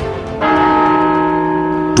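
Clock-tower bell striking: the ring of a stroke just before is still sounding when a fresh stroke lands about half a second in, then rings on in a long, steady hum.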